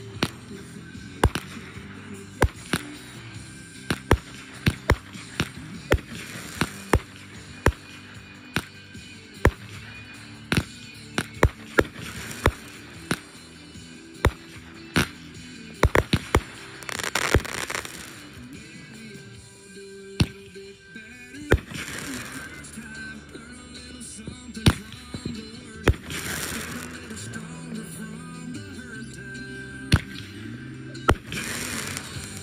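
Consumer fireworks going off: dozens of sharp bangs and pops at irregular intervals, with a hissing rush about seventeen seconds in and again about twenty-six seconds in. Music plays underneath throughout.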